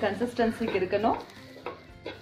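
Spatula stirring and scraping a jaggery-and-coconut filling as it cooks in a nonstick pan, with a light sizzle. A voice is heard over the first second, then short scraping strokes.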